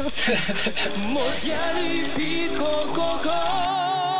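Music with a singing voice that climbs into long, high held notes with a wide, steady vibrato from about a second and a half in.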